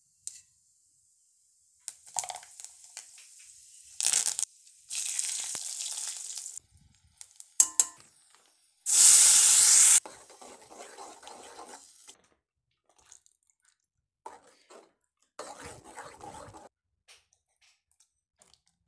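Hot oil sizzling in a metal kadai as a tempering of seeds and dal fries, in several short stretches that start and stop abruptly. The loudest is a burst of sizzling and steaming from about nine to ten seconds in, as ground chutney is poured into the hot oil.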